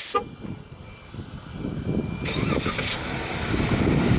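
2015 Jeep Wrangler's 3.6-litre Pentastar V6 starting by remote start: the engine comes to life over the first couple of seconds, louder by about two seconds in, then runs steadily.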